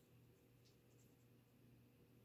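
Near silence: a marker tip moving faintly on paper, over a low steady hum.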